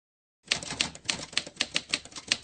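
Typewriter key-strike sound effect: a quick, uneven run of sharp clacks starting about half a second in.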